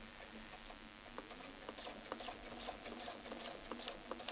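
Domestic sewing machine stitching slowly for free-motion ruler work: faint irregular ticking over a low steady hum.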